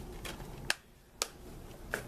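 Plastic DVD cases and packaging being handled, with three sharp clicks spread about half a second apart over light handling noise.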